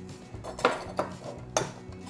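A few light clicks and knocks of kitchen utensils and a glass mixing bowl, about three in all, the loudest near the end.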